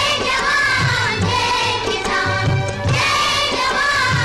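Song from an old Hindi film: a singer with a wavering vibrato over instrumental accompaniment and a steady beat.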